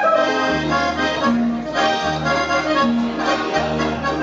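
Accordion playing a lively Tyrolean folk dance tune, with chords over bass notes that alternate in a steady rhythm.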